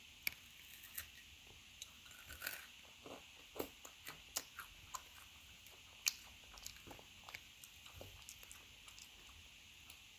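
A person chewing a Kit Kat, the chocolate-covered wafer giving faint, irregular crisp crunches throughout.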